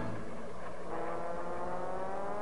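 Cartoon vehicle engine sound effect, running steadily with its pitch rising gradually.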